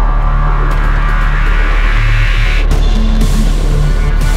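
Tense, suspenseful drama score with a deep sustained bass drone; a rising swell cuts off suddenly just before three seconds in.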